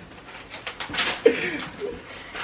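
Muffled laughter from a group of people, breathy bursts at first, then short hooting giggles in the second half.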